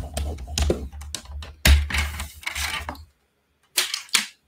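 Paper trimmer's scoring head sliding along its rail to score a sheet of cardstock: irregular clicking and rattling with low knocks of handling for about three seconds, then it stops. Two more clicks follow near the end.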